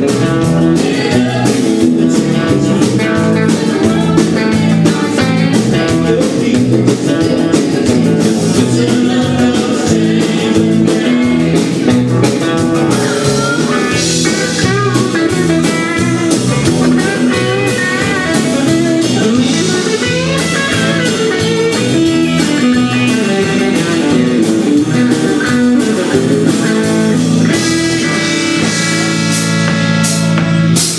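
Live country band playing electric guitar, bass guitar and drum kit, with a steady drum beat and bending electric guitar lines.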